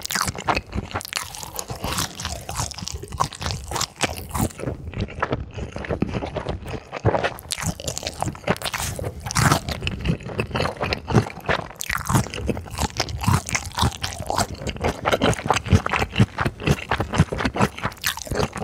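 Close-miked crunching and chewing of ice chunks, a rapid run of sharp cracks and crunches with scraping between them.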